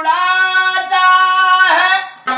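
A male qawwali singer holding one long, high sung note in a strong voice, the pitch bending near the end before it breaks off.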